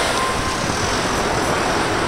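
Steady road traffic noise from cars in and around a car park.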